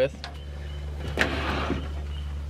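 A metal camp stove being slid out along a wooden shelf: a short scraping slide about a second in, over a steady low hum.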